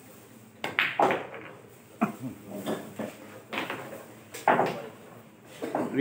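Billiard balls clacking together: several sharp knocks spread over a few seconds, the first cluster the loudest.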